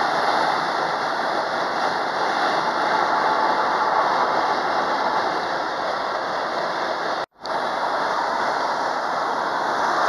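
Steady road and wind noise of a car driving at highway speed, heard from inside the cabin. About seven seconds in there is a brief, sudden cut to silence before the noise resumes.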